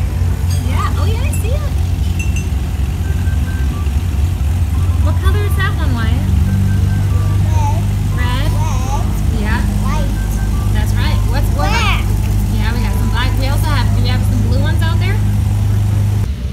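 Steady low engine hum of a small propeller plane's piston engine running on the ramp, with a child's voice chattering and singing over it. The hum cuts off abruptly at the very end.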